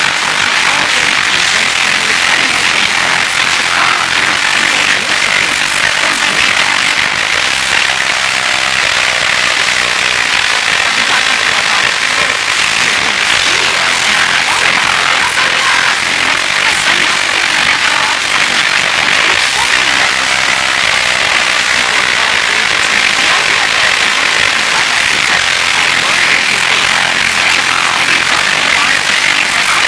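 Loud steady hiss of a noisy analog TV recording, with faint music and a voice buried beneath it.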